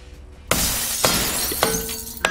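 A sudden crash of shattering glass about half a second in, laid over a mallet blow on the rear output shaft's CV joint. It runs on with sharp clinks for about a second and a half and settles into a ringing tone near the end.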